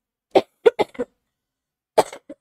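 A woman coughing: a quick run of four short coughs about a third of a second in, then another cough near the end.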